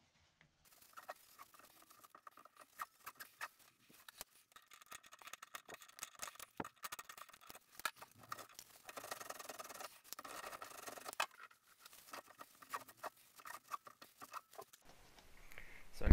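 Faint scratching and rustling with scattered light clicks from a paper towel wiping out the inside of a shower mixing valve body, clearing the shavings before the new cartridge goes in.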